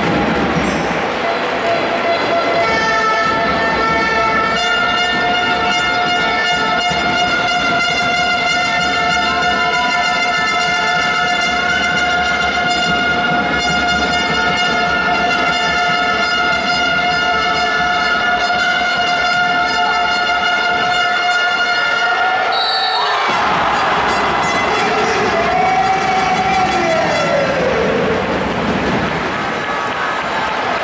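A long, steady horn-like tone made of several pitches at once, held for about twenty seconds over the noise of a basketball crowd, cutting off suddenly about 23 seconds in. A shorter falling tone follows.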